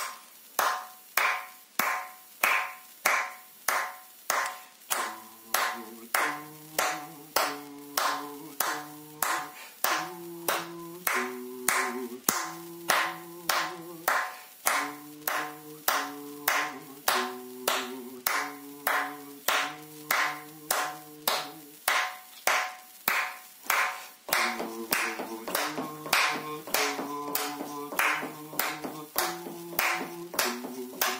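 Hand claps keeping a steady beat of about two a second in a rhythm-reading exercise. A backing track of bass and chords comes in about five seconds in, drops out for a couple of seconds near two-thirds of the way, and comes back.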